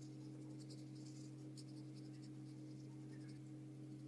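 Paintbrush bristles dabbing and stroking acrylic paint onto paper in short, scratchy strokes, several a second, over a steady low electrical hum.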